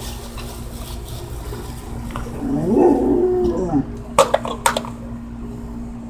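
A dog's drawn-out call, rising and then falling in pitch for about a second and a half, with a few sharp clinks about four seconds in, over a steady hum.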